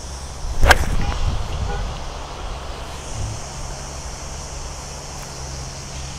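A golf iron striking a ball off the tee: one sharp crack less than a second in. After it comes a low steady rumble of wind on the microphone.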